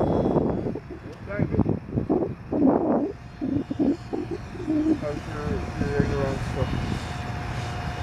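A radio-controlled model airplane's motor droning faintly in flight overhead, settling into a steady hum from about the middle on. A loud rushing noise fills the first second, and muffled voices come and go.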